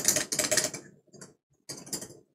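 Glass test tube rattling and clicking against a wooden test-tube rack as it is lifted out, with a second brief scrape of glass near the end.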